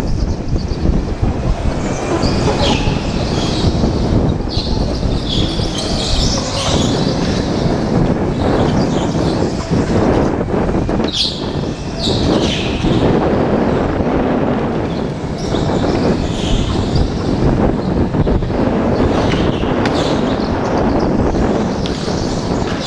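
Go-kart being driven hard around an indoor track, heard from a camera mounted on the kart: a continuous rough rumble and rattle of the kart, with several short high squeals from the tyres sliding through the corners.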